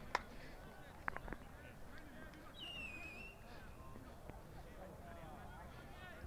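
Faint, distant voices of rugby players calling out to each other on the pitch as they form a lineout, with a few sharp hand claps near the start and about a second in.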